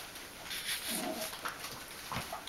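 A Bichon Frisé puppy gives a short, low vocal sound about a second in while play-fighting, over light scuffling of paws on the play mat.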